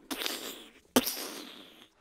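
Two hissing crash noises for a toy F1 car collision, each fading out over about a second; the second starts with a sharp hit about a second in.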